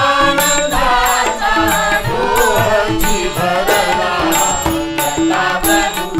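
Devotional bhajan accompaniment: tabla played in a steady rhythm under a harmonium melody, with regular hand-cymbal strikes and voices carrying the tune.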